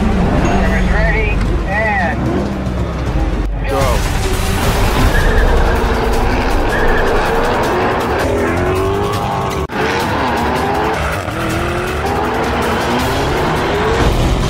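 Several car engines revving and accelerating hard, their pitch rising and falling, with tyre squeal, over trailer music. The sound cuts off sharply about three and a half seconds in and again near ten seconds.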